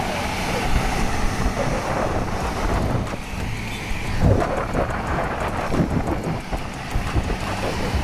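Heavy wind buffeting the microphone over the low, steady rumble of a vehicle driving along a road.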